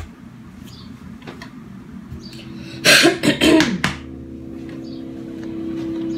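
A person coughs in a short burst about three seconds in. Under it, a low steady drone starts and slowly grows louder: the opening of the music video's soundtrack.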